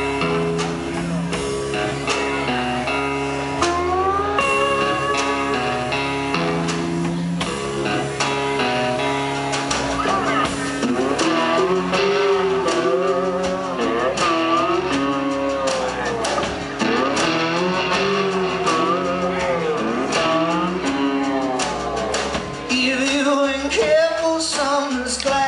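Live band playing a slow, bluesy song intro on guitars and drums. Held chords change in steps at first, and a wavering, bending lead melody comes in about ten seconds in.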